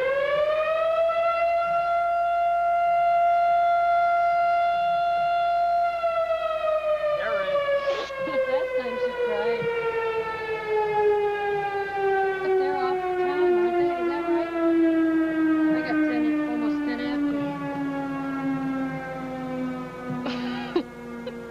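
Outdoor warning siren sounding one long tone. It finishes rising in pitch about a second in, holds steady for about five seconds, then slowly winds down in pitch for the rest of the time.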